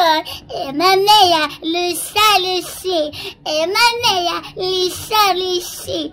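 A woman singing unaccompanied in a high, wavering voice, in short held phrases.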